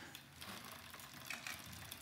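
Faint mechanical ticking from a road bike's drivetrain as the crank is handled.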